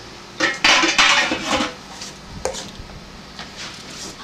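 Metal clattering of canning gear against an enamel canning pot: a loud spell of clanking starting about half a second in and lasting about a second, then a few lighter clicks as a jar is handled with a jar lifter.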